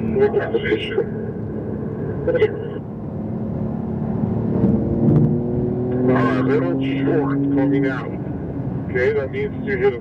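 Porsche 911 Turbo S's twin-turbocharged flat-six heard from inside the cabin over steady road noise. The engine note climbs steadily from about halfway through as the car accelerates, then falls away near the end. Indistinct voices come in briefly at the start and again later.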